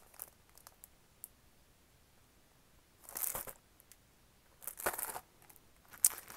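Packaging of a boxed planner die set being handled: two brief rustles, about three seconds in and again near five seconds, with quiet between.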